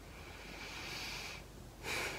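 A woman's slow breath, heard as a soft airy hiss for about a second and a half, then a quick in-breath near the end.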